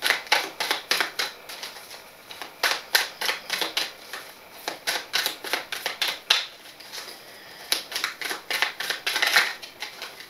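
A deck of tarot cards being shuffled by hand, cards sliding and slapping against each other in quick, irregular clicks, several a second.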